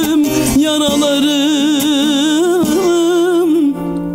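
A man singing a long, wavering line in Turkish folk style to bağlama (long-necked saz) accompaniment. The voice breaks off near the end, and the held instrumental tones go on more quietly.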